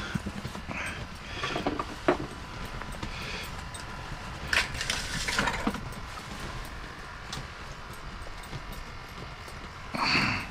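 Handling noise: scattered clicks and knocks, with a couple of short rustling scrapes around the middle as a tape measure is drawn out and laid against a largemouth bass. A steady low rumble runs underneath.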